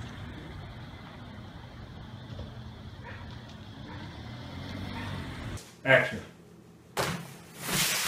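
Car engine idling with a low, steady rumble for about five and a half seconds, cutting off abruptly. Near the end comes a sharp knock followed by a louder rushing noise.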